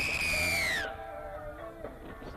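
Background music, with a loud, high whistle-like tone at the start that glides down in pitch and fades within about a second.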